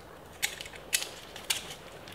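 Metal spring clip of a wooden clipboard clicking as it is worked by hand: three sharp clicks about half a second apart.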